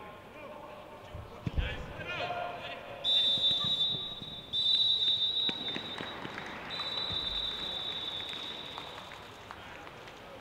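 Referee's whistle blown in three long, steady, high blasts, the last one fading, typical of the full-time whistle. Players' shouts come just before it.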